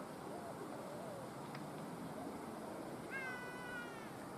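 A single drawn-out animal call, like a meow, held level and falling slightly, under a second long, about three seconds in, over a faint outdoor background.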